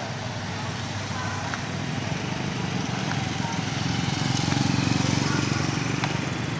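Street traffic with a motorcycle engine passing close, growing louder about four seconds in and easing off near the end.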